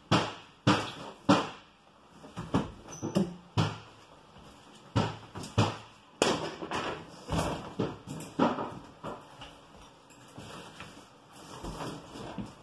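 Irregular knocks, scrapes and short crackling tears as old wall covering is pried and pulled away from a plaster wall, with the loudest knocks in the first second or two.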